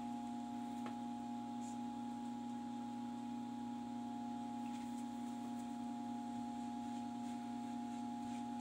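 Steady electrical hum, a low tone with higher overtones, holding at one level throughout, with a couple of faint ticks in the first two seconds.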